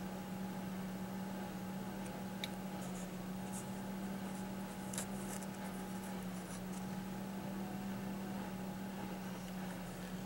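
Faint rubbing and scratching from hands handling foam cups of seed-starting mix, with a couple of light clicks about two and a half and five seconds in, over a steady low hum.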